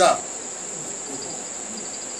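Crickets trilling steadily in one continuous high-pitched note. A fainter, quickly pulsing trill joins about halfway through.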